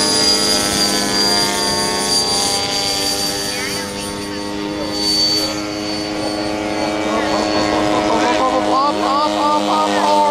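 Turbine engine of a large radio-controlled F-15 Eagle model jet, a steady high whine through its takeoff run and climb-out. The whine weakens over the last few seconds as the jet climbs away.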